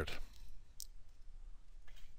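Two faint, sharp clicks over quiet room tone: one just under a second in, and a fainter one near the end.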